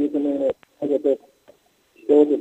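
A person's voice, cut off above about 4 kHz as over a phone or broadcast line, in two short stretches with a sharp click about half a second in and a brief pause near the end.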